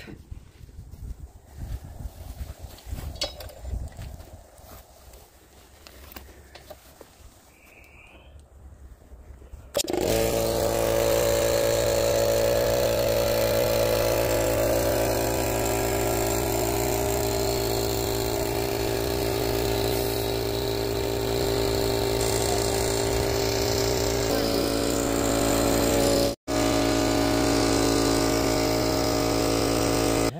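Portable electric air compressor starting abruptly about ten seconds in and then running with a steady hum, pumping air through its hose into a flat trailer tire. Before it starts there are only faint handling sounds, and the running sound drops out for a split second near the end.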